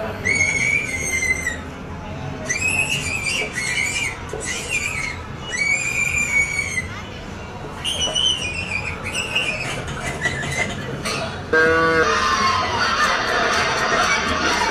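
High-pitched animal squeals, about five drawn-out cries each lasting around a second and rising then falling, played from farm-animal footage through a laptop speaker. A short lower call comes near the end, followed by a noisy hiss.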